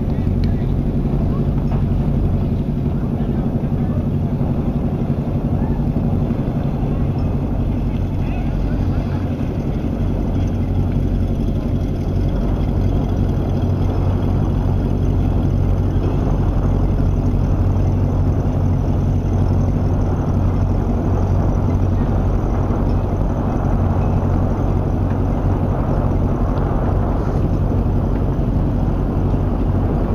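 Boat engine running steadily at low speed, a continuous low droning hum.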